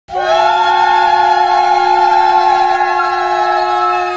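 A conch shell (shankha) blown in one long, steady note that slides up into pitch at the start and then holds.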